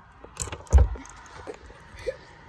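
Light clicks and rattles of the stock tail-light bulb being pulled by hand out of its plastic socket, with one dull thump just under a second in.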